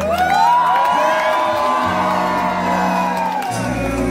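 Music playing in a crowded room, with one long whooping cry over it that rises at the start, holds for about three seconds and falls away.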